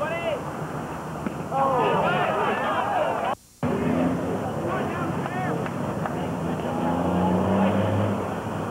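Overlapping shouts and calls from players and spectators at a baseball game, over a steady low hum. The sound cuts out for a moment about three and a half seconds in, where the videotape glitches.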